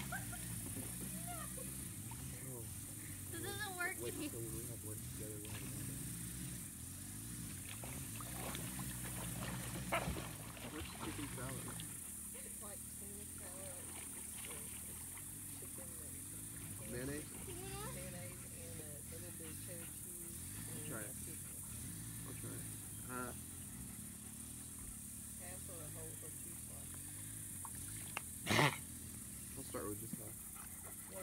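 Dogs wading and swimming in shallow lake water, with faint voices and wavering dog sounds now and then over a steady low background rumble. A single sharp, loud splash or knock comes near the end.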